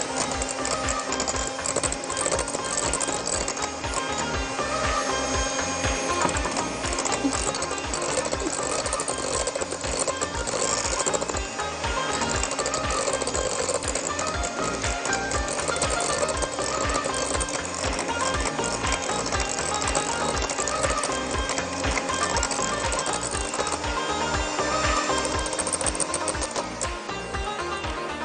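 Electric hand mixer beating ice cream base in a glass bowl, its motor holding a steady whine that creeps slightly higher in pitch in the second half.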